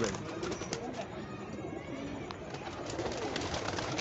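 Domestic flying pigeons cooing faintly in the background.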